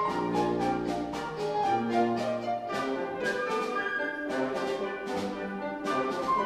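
Grand piano playing quick repeated notes with a symphony orchestra, over held low orchestral chords with brass that give way about two and a half seconds in.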